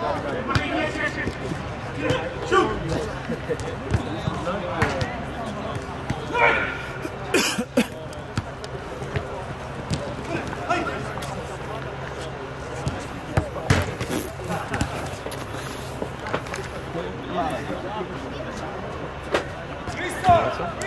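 Scattered shouts and calls of players during a soccer game, with a few sharp thuds of the soccer ball being struck, the loudest about seven and a half seconds in and again near fourteen seconds.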